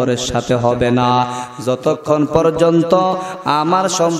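A man chanting a sermon in a sing-song melodic voice into a microphone, with long held notes that slide between pitches: the sung verse style of a Bengali waz preacher.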